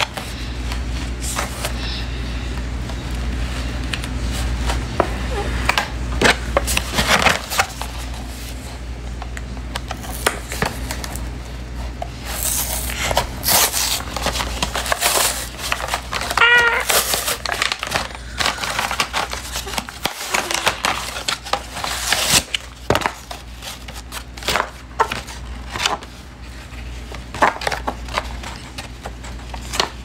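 Crinkly packaging being torn open and rustled by hand: irregular crackling and tearing, with louder bursts now and then. A short wavering high-pitched cry comes about halfway through.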